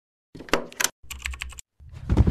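Clicking like typing on a computer keyboard, in two short quick runs, then a deep low thud starting near the end.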